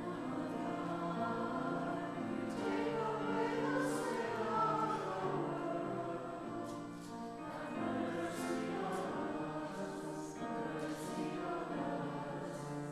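A church choir singing slow, sustained lines in several parts with keyboard accompaniment.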